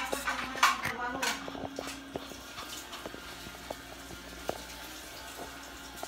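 Scattered small clicks, taps and rubs of a handheld phone being moved about close to its microphone, busiest in the first second or so, over a faint steady hum.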